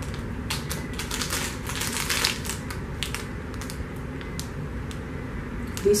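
Plastic wrapper of a belVita breakfast biscuit package crinkling as it is handled, a dense run of crackles about one to two and a half seconds in, then only scattered crackles.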